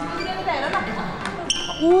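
Young women's voices talking and exclaiming as they walk together, with a single sharp click and a brief high ring about one and a half seconds in, and a loud "Oo" at the end.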